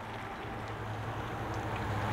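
Power liftgate motor of a 2013 Jeep Grand Cherokee running as the tailgate rises: a steady low hum that grows slowly louder.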